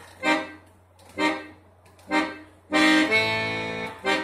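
Siwa & Figli piano accordion playing chords: three short stabs about a second apart, then a longer held chord near the end.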